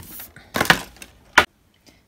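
Two sharp knocks of hard plastic, about two thirds of a second apart, from the empty clear plastic packaging tray being handled; the sound then drops out abruptly.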